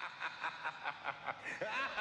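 Quiet, quick laugh-like pulses, about five a second, growing louder: the opening of the credits soundtrack.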